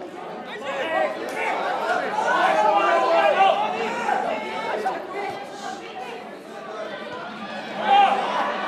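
Football spectators' voices: several people talking and calling out at once, overlapping chatter that swells about two to four seconds in.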